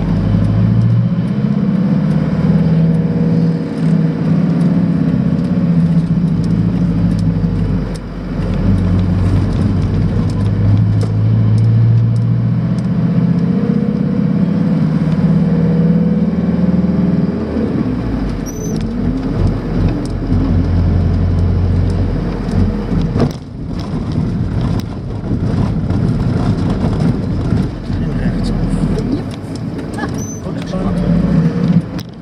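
Mercedes camper van's engine and road noise heard from inside the cab while driving, a steady hum whose pitch steps a couple of times, with a single knock about two-thirds of the way through.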